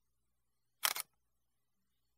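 Camera shutter click, a quick double snap a little under a second in.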